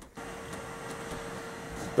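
Steady background hiss with a faint constant hum, starting a moment in: a machine running in the room.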